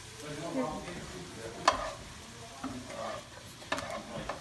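Chopped vegetables and bacon sizzling in a nonstick frying pan as they are stirred with a utensil. Two sharp knocks of the utensil against the pan, one less than halfway in and one near the end.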